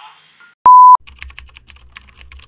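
A short, very loud beep on one steady pitch, about a third of a second long. Then a fast run of keyboard-typing clicks, a sound effect laid over text typing itself onto the screen.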